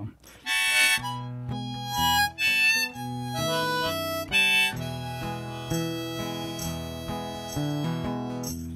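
Harmonica in a neck holder playing a slow melody of held notes and chords over strummed acoustic guitar.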